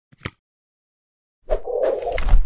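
Logo-intro sound effect: a brief click near the start, then about one and a half seconds in a sudden noisy burst with a deep low thud that carries on past the end.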